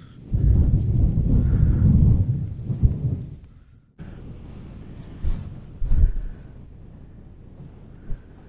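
Wind buffeting the microphone: a loud, gusty low rumble for the first three seconds or so, then, after a sudden drop, a quieter steady rush with two brief low thumps.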